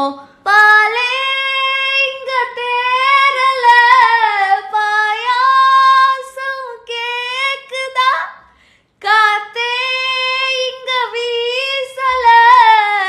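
A woman singing a song unaccompanied in a high voice, holding long notes with slow glides in pitch, and pausing for a breath about eight seconds in.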